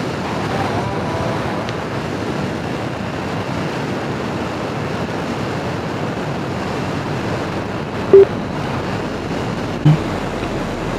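Steady rush of wind on a helmet-mounted camera microphone while riding a motorcycle at highway speed, with road and traffic noise mixed in. Two brief louder blips near the end.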